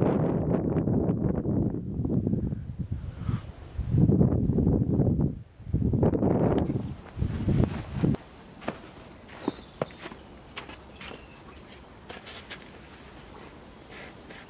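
Footsteps of someone walking downhill outdoors, mixed with low buffeting on the microphone, loud and uneven for the first eight seconds. Then it cuts to a quieter outdoor background with a few sharp clicks.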